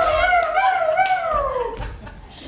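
A person's long, wavering vocal wail, sliding down in pitch and fading near the end.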